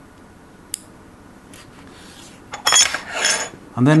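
Small metal connector parts being handled: one sharp click about a second in, then a louder run of metallic clinking and rattling near the end.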